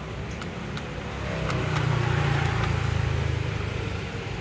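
A few sharp clicks of the payphone's metal keypad buttons being pressed. From about a second in, a passing vehicle's low rumble swells and then fades.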